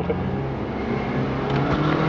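Car being driven, heard from inside the cabin with the window down: steady engine and road noise, with a brief laugh right at the start.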